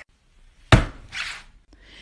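A single sharp thump against a hardcover book lying on a wooden table, followed by a short scuffing sound of a hand on the cover.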